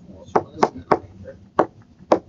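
Stylus tapping on a tablet screen while handwriting digits, four sharp, irregularly spaced clicks.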